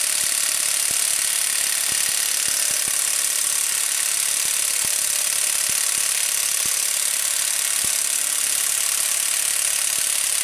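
Brushless half-inch cordless impact wrench hammering steadily in its low mode on the crankshaft bolt, drawing the harmonic balancer onto the crank of a Hemi V8.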